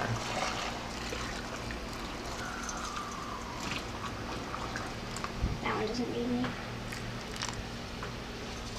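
Hot brine of water, vinegar and salt being poured from a glass measuring cup through a stainless steel canning funnel into a glass jar of pickles: a steady trickle of liquid.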